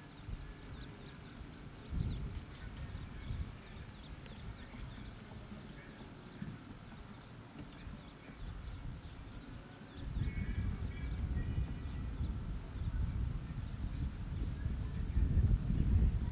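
Faint birds chirping over an irregular low rumble, which grows louder from about ten seconds in.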